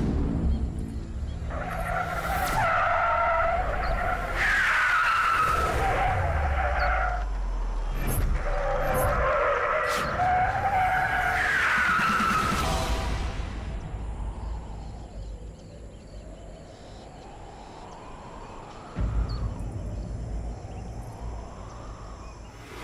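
Car tyres screeching in two long, wavering squeals over a low engine rumble, followed near the end by a rising whoosh and more low rumble.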